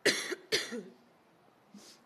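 A person coughing twice, about half a second apart, then a short, much fainter sound near the end.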